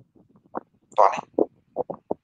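Only speech: a man talking in a few short syllables with gaps between them.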